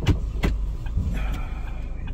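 Steady low rumble inside the cabin of a slowly moving car, with two sharp knocks about a third of a second apart near the start.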